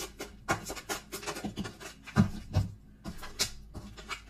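Tarot cards being shuffled and handled: a run of quick papery riffles and clicks, with two dull thumps a little after two seconds in.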